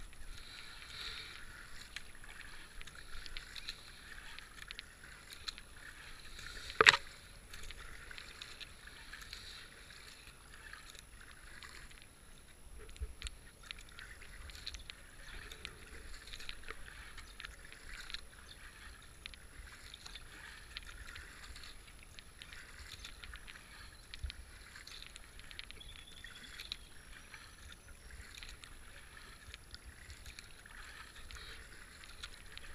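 Kayak paddling: water splashing and dripping off the carbon paddle blades with each stroke, with small knocks throughout. One sharp, loud knock comes about seven seconds in.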